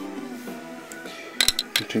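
A quick cluster of sharp metallic clicks and clinks about one and a half seconds in, from metal parts being handled on a tube amplifier's steel chassis during disassembly.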